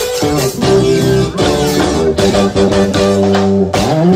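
Live band music: electric guitar playing a melody of held notes over a bass guitar line.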